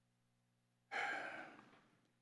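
A man's sigh: one breath pushed out close to a microphone about a second in, starting suddenly and fading over about a second.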